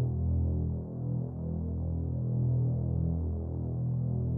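Low, sustained suspense-music drone, with no high notes in it.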